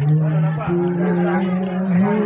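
A man's voice chanting or singing in long held notes that step from one pitch to another, over faint crowd chatter.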